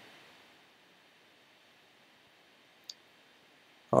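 A single computer mouse click, short and sharp, about three seconds in, otherwise near silence.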